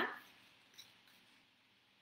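A sheet of paper being folded in half by hand: a faint, brief rustle about a second in, otherwise very quiet.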